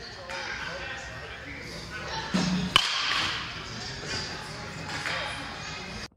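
A baseball bat hitting a pitched ball once, a sharp crack about three seconds in that is the loudest sound, over indistinct voices echoing in a large indoor hall.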